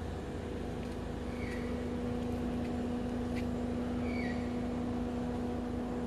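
Steady hum of an idling car engine. Over it, a bird repeats a short falling chirp about every three seconds, and there are a couple of faint clicks.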